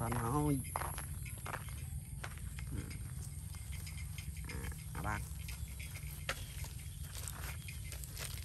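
A voice speaking, finishing a phrase in the first half-second and then only in a few short snatches, over scattered rustling steps and clicks in grass.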